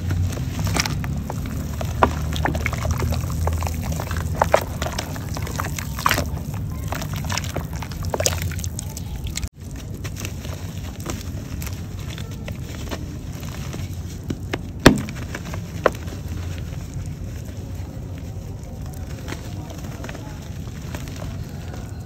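Dry chalky clay chunks crumbling by hand into a basin of muddy water: wet crunching and crackling with sloshing water and scattered sharp clicks. There is a brief break about nine and a half seconds in, and one louder click about fifteen seconds in.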